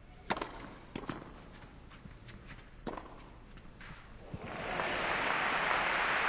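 Tennis ball struck by rackets in a short rally on clay: a serve about a third of a second in, the loudest hit, then shots about a second and about three seconds in. From about four and a half seconds, crowd applause swells and holds, greeting a backhand down-the-line winner.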